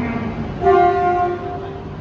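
JR East E3 series Tsubasa Shinkansen sounding its horn once on approach: a sudden, loud single blast starting about half a second in, lasting under a second and trailing off shortly after.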